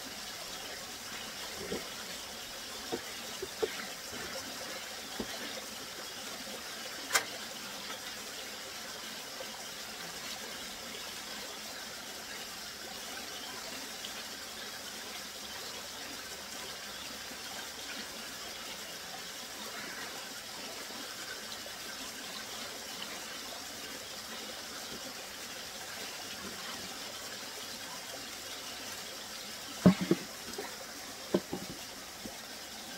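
Small mountain stream running steadily over rocks, with a few light clicks and knocks in the first several seconds, the sharpest about seven seconds in.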